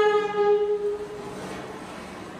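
A single held instrumental note with a rich, reedy tone sinks slightly in pitch and dies away about a second in, leaving a quiet stretch.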